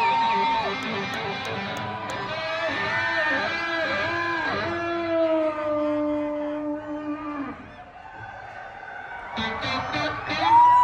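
Live rock band playing, heard from the audience, with an electric guitar holding long, bending lead notes over bass and drums. The music thins out briefly near the end, then a held guitar note comes back in.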